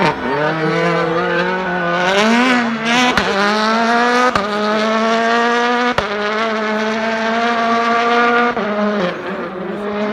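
Hyundai i20 Coupe WRC rally car's turbocharged 1.6-litre four-cylinder engine accelerating hard, its pitch rising and falling through quick gear changes in the first few seconds, then held high and steady with sharp cracks on the shifts. The revs drop briefly near the end.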